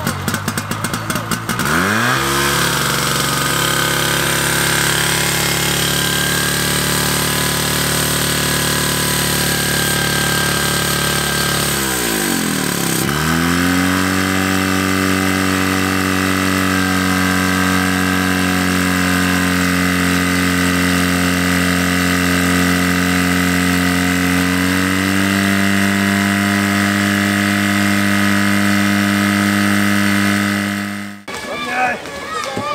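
Portable fire pump's engine running loud and steady under load, its speed dropping and settling about two seconds in, dipping sharply and picking up again about halfway, then rising a little near the end.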